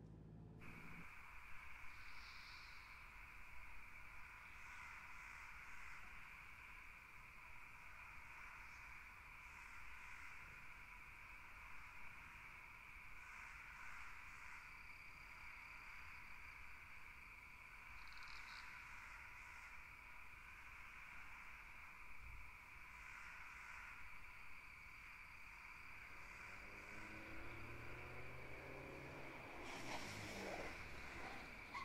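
Faint steady chorus of night insects, crickets trilling, with short high chirps repeating every few seconds. Over the last few seconds a car engine comes closer and grows louder.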